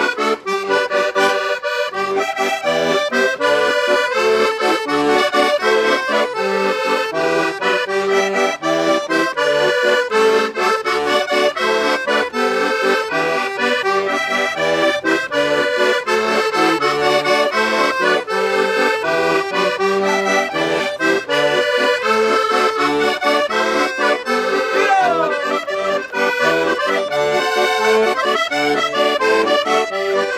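Two accordions playing a traditional Portuguese dance tune together: a Portuguese concertina (diatonic button accordion) and a chromatic button accordion, with quickly changing notes.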